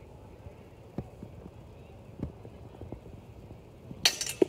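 Fencers' footwork on grass: a few scattered dull thumps, the sharpest about a second in and just after two seconds.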